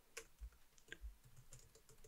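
Faint computer keyboard typing: a few scattered, soft keystrokes.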